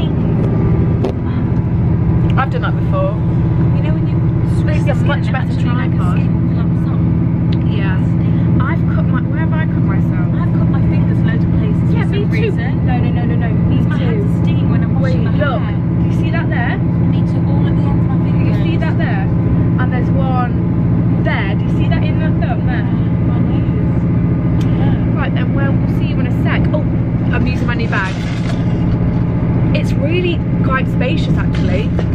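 Steady low rumble and hum of a passenger train running, heard from inside the carriage.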